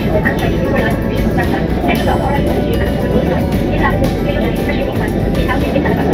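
Steady low rumble of a London Underground escalator and station, with indistinct voices and background music over it.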